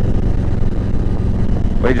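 Harley-Davidson Ultra Classic's V-twin engine running steadily while the bike cruises, heard from the rider's seat.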